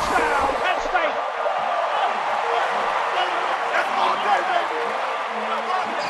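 A large football-stadium crowd cheering: a dense, steady roar of many voices.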